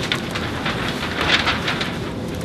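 Sheets of paper rustling and shuffling as several people handle documents, with a few louder crackles near the middle.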